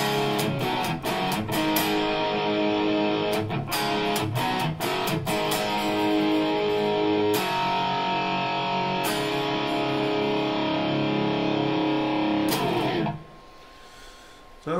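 2015 Gibson Les Paul Junior electric guitar with its single P90 pickup, played through a Fender Champ amp profile on a Kemper Profiler. A run of quick strummed chords gives way to longer, ringing chords, and the playing stops about a second before the end.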